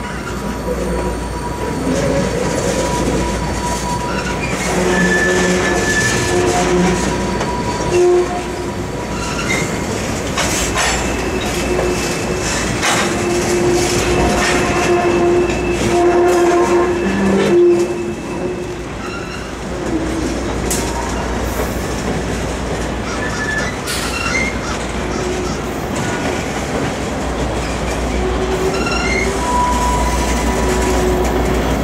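Norfolk Southern freight cars (covered hoppers and tank cars), shoved by a locomotive at the rear, rolling across a steel railroad bridge: a steady rumble, wheels squealing in on-and-off high tones, and scattered clicks and clacks.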